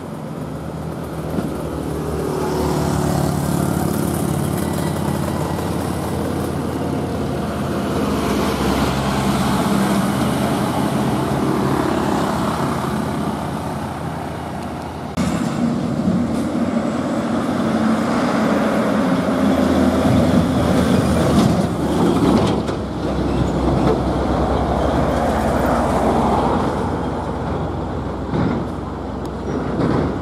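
Diesel engine of a heavily loaded FAW JH6 tractor-trailer pulling slowly up a bend under a cast-iron load. About halfway the sound changes suddenly to a Hino SG260TH truck's diesel engine running as it approaches with other traffic.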